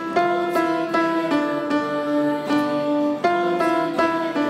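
A small choir singing a worship-song melody, accompanied by a plucked acoustic guitar, with sustained notes changing every half second to a second.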